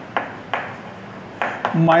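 Chalk tapping on a chalkboard while numbers are written: a few sharp, separate taps with light scratching between them.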